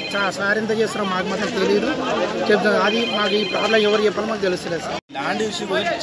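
A man speaking Telugu into an interview microphone, with a telephone ringing in the background: a ring ends just after the start, and another lasts about a second in the middle. The speech breaks off briefly near the end, and a second man starts speaking.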